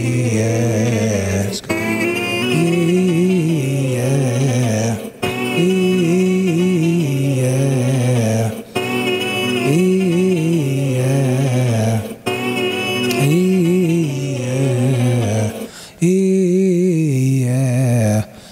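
Man singing bounce runs in a low voice: repeated phrases of quick, stepped notes, each about three and a half seconds long, with a short breath between them.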